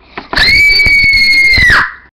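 A girl's loud, high-pitched scream, held at one pitch for about a second and a half, then dropping away.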